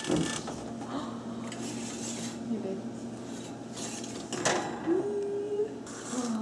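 Metal kitchenware and bakeware being handled, with light clinks and one sharp clank about four and a half seconds in.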